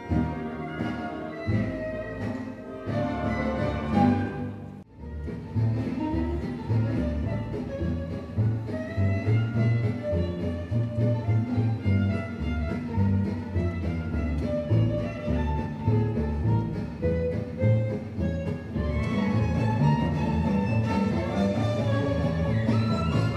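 Gypsy jazz played by a symphony orchestra, with a solo violin carrying the melody over the string section, acoustic guitar and double bass. Low bass notes keep a steady beat, and the music drops away briefly about five seconds in before picking up again.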